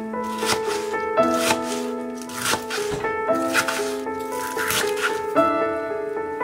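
Background music with a melody, and over it a chef's knife chopping green onions on a plastic cutting board: short chops, about two a second.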